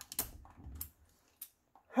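Ratchet wrench clicking a few short, irregularly spaced times as a universal socket runs a lug nut back down to tighten it.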